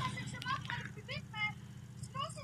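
Voices of several people talking in the background over a steady low hum.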